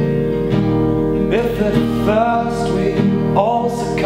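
Acoustic guitar and organ playing a slow song, the organ holding steady chords under the strummed guitar. A man's voice comes in singing about a second in, in drawn-out phrases.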